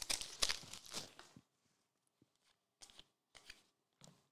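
Foil trading-card pack wrapper crinkling as it is torn open and pulled off the cards, fading out about a second and a half in. A few faint clicks of the cards being handled follow.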